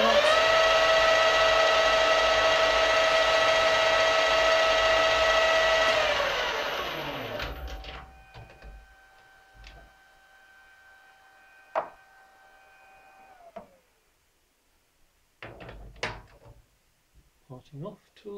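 Small metal lathe's motor and spindle running at speed with a steady whine, winding down about six seconds in and coasting to a stop over the next two seconds. Afterwards a few sharp metallic clicks and knocks as the chuck and tool post are handled.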